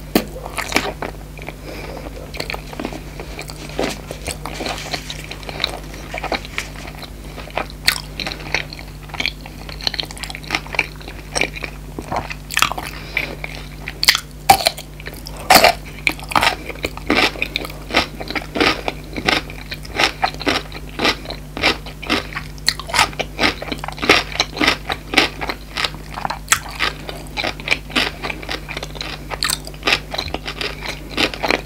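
Close-miked ASMR eating sounds: a person biting and chewing food, with sharp crunches coming irregularly, often several a second and thicker in the second half. A faint steady low hum runs underneath.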